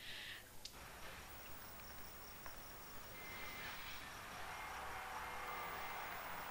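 Faint crickets chirping steadily in a quiet night-time background ambience.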